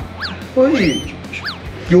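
Comic sound effects added in editing: a run of quick, falling, whistle-like chirps, about two a second, with one longer rising-and-falling whoop near the middle, over background music. A short spoken exclamation comes in between.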